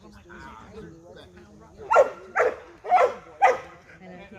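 A young Airedale terrier barking four times in quick succession about halfway through, worked up during bite-work training, with low voices talking before the barks.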